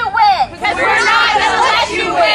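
A woman's voice amplified through a megaphone, speaking loudly without a break.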